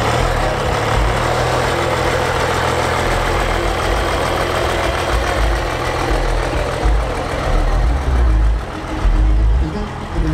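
Cummins 12-valve 6BT turbodiesel inline-six in a rat rod running at low revs as it slowly pulls away under the load of a gooseneck trailer. The engine sound is steady at first and grows more uneven in the last few seconds.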